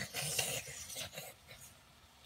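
A spatula scraping and stirring scrambled eggs in a frying pan, a few short scrapes in the first second that then die away.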